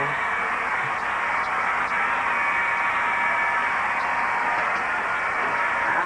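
Handheld hair dryer running: a steady rush of air with a faint steady whine under it.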